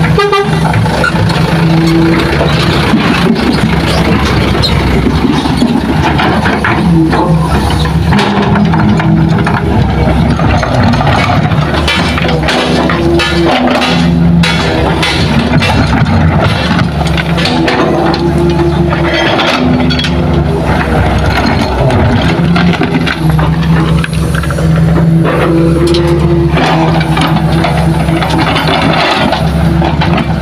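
Hitachi hydraulic excavator's diesel engine running steadily under load while it digs and loads soil, with a higher tone coming and going. Scattered knocks and clatter, mostly in the middle stretch, come from earth and rocks being scooped and dropped into a dump truck's bed.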